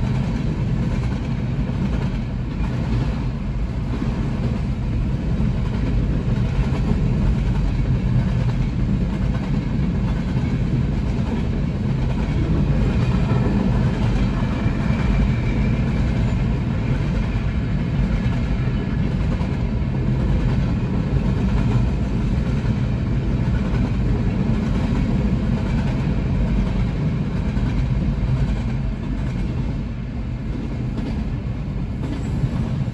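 Freight cars of a long manifest train rolling past a grade crossing: a steady, unbroken rumble of steel wheels on rail.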